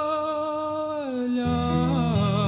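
A male voice sings a long held note with vibrato in a Coimbra fado, sliding down to a lower note about a second in. Low plucked guitar notes come in about halfway through.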